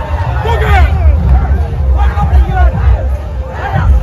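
Loud dance music with heavy bass, under the shouting and babble of a close crowd of dancing young men.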